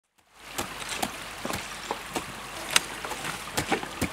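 Shallow sea water lapping and trickling around floating ice floes, with irregular small clicks and plops every half second or so.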